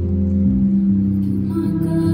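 Slow live ballad accompaniment in a pause between sung lines: low sustained chords ringing on, with new notes coming in near the end.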